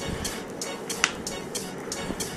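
Background electronic music with a steady beat, about four beats a second, and a single sharp click about a second in.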